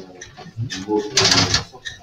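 A corkscrew being worked into or drawing the cork of a wine bottle: a short, loud rasp just past a second in, with murmured speech before it.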